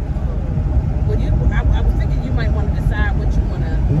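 Steady low road and engine rumble inside a moving car's cabin, under quieter talking.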